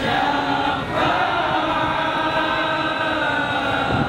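Group vocal chanting in a choir-like style, long notes held steadily with a brief break about a second in.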